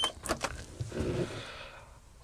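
A short high beep from a Dometic fridge's touch control panel as its power button is pressed, followed by a few faint clicks and quiet handling noise.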